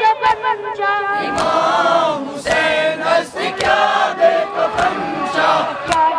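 A crowd of Shia mourners chanting a Muharram lament (noha) together, loud and continuous, with the sharp slaps of hands striking chests (matam) coming through every half second or so.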